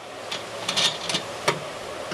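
A few light metal clicks and a short scrape from hand work on a new mower-deck spindle pulley, its nut being turned onto the spindle shaft by hand.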